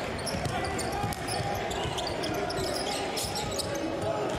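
Basketball arena ambience: a steady murmur of spectators' voices during play, with faint bounces of the basketball on the hardwood court.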